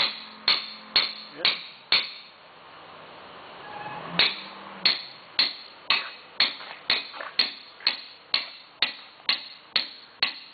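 Caulking mallet striking a caulking iron in a steady rhythm of about two sharp, ringing blows a second, driving oakum into the seams of a wooden boat's planked hull. Five blows come first, then a pause of about two seconds, then the blows resume.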